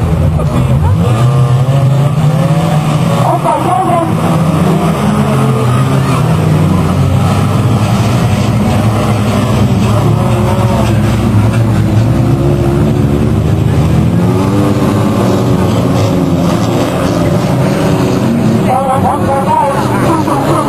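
Several banger racing cars' engines running hard together around the track, a loud continuous mix of engines whose pitches keep rising and falling as the drivers rev and lift.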